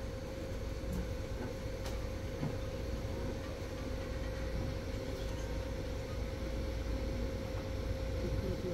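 Steady low electrical-sounding hum and rumble with a thin steady tone above it, and a few faint clicks.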